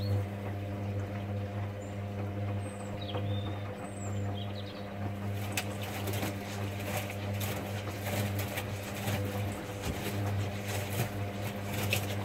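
Hoover Dynamic Next front-loading washing machine tumbling a wash load: the drum motor hums steadily while wet laundry turns and drops in the drum, with scattered soft knocks and splashes from about halfway through.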